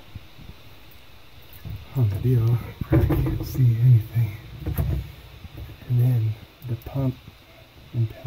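A man's voice speaking in short phrases that the recogniser did not catch, with a couple of sharp knocks about three and five seconds in.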